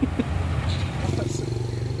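Steady low engine hum of passing road traffic, a motorcycle among it.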